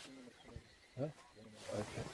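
Short, pitched animal calls from a fight in which lions maul a spotted hyena. The loudest comes about a second in and rises quickly in pitch.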